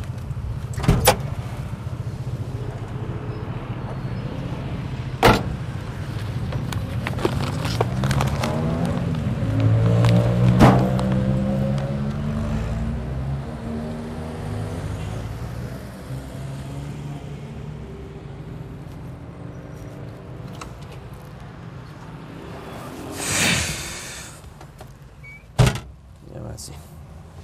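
Car engine heard from inside the cabin, its pitch rising as the car accelerates, loudest about ten seconds in and rising again later. A few sharp clicks and knocks come through, and there is a short burst of hiss near the end.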